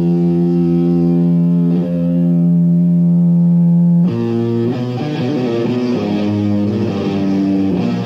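Death metal demo recording: a distorted electric guitar holds a long sustained chord, then about four seconds in breaks into a slower riff of changing notes.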